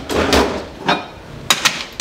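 Lid of an under-counter ice bin being slid open, a scraping slide with a knock, followed by a click and then two sharp clicks about one and a half seconds in.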